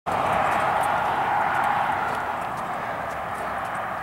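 Steady road noise from traffic on a two-lane highway, slowly fading over the few seconds.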